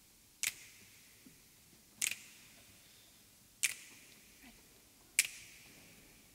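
Finger snaps keeping a slow, steady pulse: four sharp snaps about one every 1.6 seconds, each ringing on in a reverberant church.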